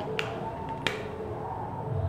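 Two sharp clicks about two-thirds of a second apart, a marker tapping against a whiteboard.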